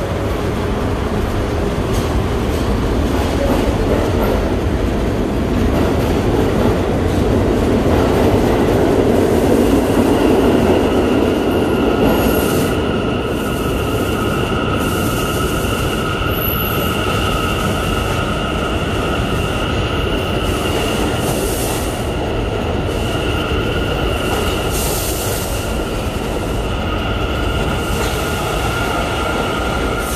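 New York City subway train pulling out along the platform, its running gear rumbling and loudest about a third of the way in. Then a steady high-pitched steel wheel squeal with two pitches sets in and carries on for the rest.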